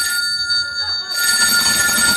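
A telephone ringing: one long, continuous bell ring that lasts through the whole moment, signalling an incoming call.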